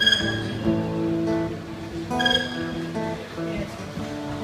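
Acoustic guitar strumming the intro of a slow country-folk song, with stronger strums at the start and again a little after two seconds in.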